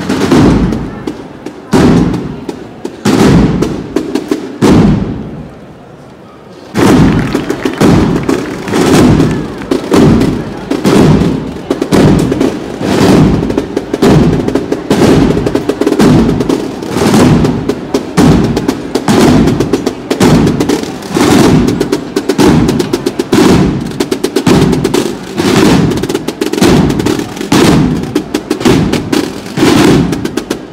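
Procession marching band's snare drums beating a steady march rhythm. The drumming drops off about five seconds in and comes back suddenly at full strength about two seconds later.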